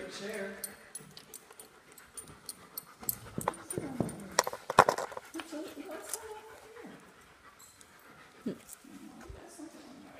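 A dog right at the phone making a few short vocal sounds around the middle, mixed with knocks and rubbing from the phone being handled against it.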